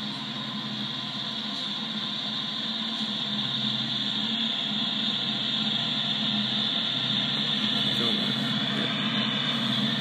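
A freight train's tank cars rolling past: a steady rumble and rail noise from the wheels that grows slightly louder through the stretch.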